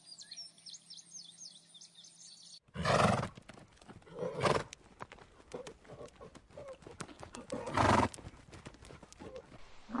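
Zebras calling: a loud, rough, barking bray about three seconds in and another about eight seconds in, with quieter calls between. Faint high bird chirps come before them.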